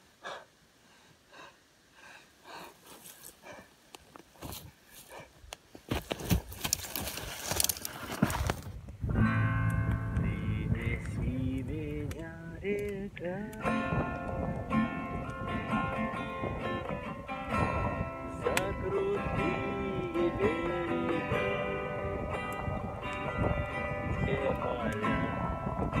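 Acoustic guitar strummed with a man singing along, starting about nine seconds in. It is preceded by faint, uneven breathing sounds and then a loud rushing noise of about three seconds.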